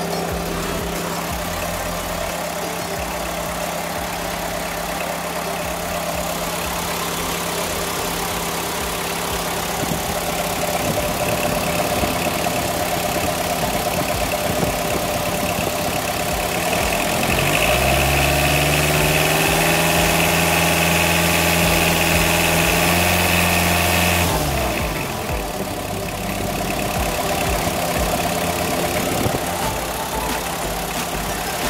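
Car engine idling; about two-thirds of the way through its speed rises, holds higher for several seconds, then falls back to idle.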